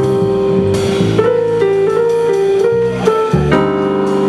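Small jazz band playing live: piano, upright bass and drums under a melody of held notes that change pitch about every half second.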